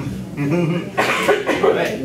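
Indistinct talking among a group of people, with a cough.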